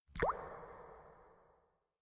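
A video-editing transition sound effect: a sharp click straight into a quick upward-sliding pop, with a reverberant tail that fades away over about a second and a half.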